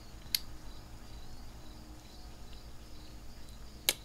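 A pause in a spoken monologue: faint steady background hum and hiss from the recording, with a short sharp click about a third of a second in and another just before the end.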